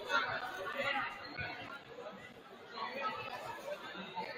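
Indistinct chatter of several voices in a school gymnasium, with no clear words.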